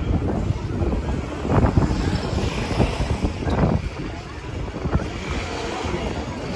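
Busy city street ambience: wind rumbling on the microphone, mixed with the voices of passers-by in a pedestrian crowd.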